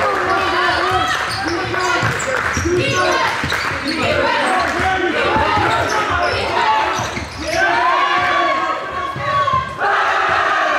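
Live basketball game sound on a hardwood court: the ball bouncing and sneakers squeaking as players run the floor, with players' voices.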